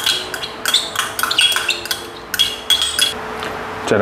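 Metal spoon clinking and scraping against a small ceramic cup while scooping yogurt out onto chicken: a quick run of light taps, each with a short high ring, stopping about three seconds in.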